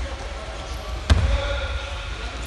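Thuds of wrestlers' bodies and feet on a wrestling mat: low dull thumps, with one sharp, louder thud about a second in. Voices are faint behind them.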